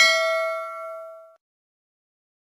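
A bell-chime sound effect, the kind played as a notification bell icon is clicked. It is a single ding with several tones ringing together, fading away over about a second and a half.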